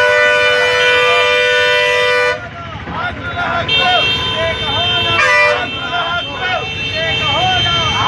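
Vehicle horns held in long, steady blasts, the first ending about two seconds in and a second starting near the middle, over voices shouting.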